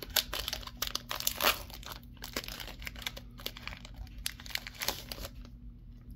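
Foil booster-pack wrapper crinkling and tearing as it is torn open by hand, a dense run of crackles that thins out about five seconds in.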